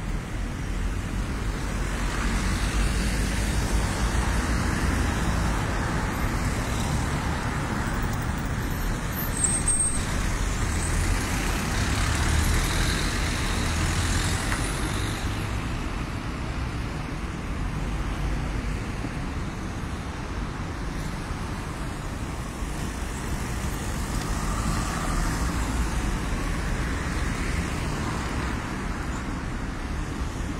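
Road traffic around a city roundabout: cars and taxis driving past with engine and tyre noise, swelling and fading as each vehicle goes by.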